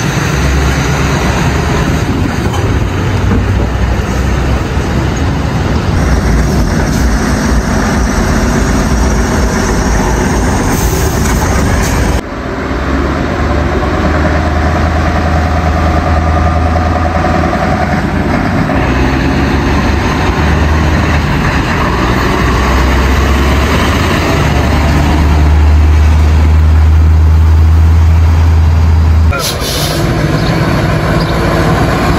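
Scania trucks' heavy diesel engines running as they move off at low speed, a deep steady rumble, with a sudden cut about twelve seconds in.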